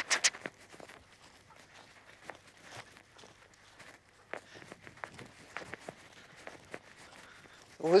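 Faint, irregular footsteps of a person walking on a grass meadow with a dog on a leash.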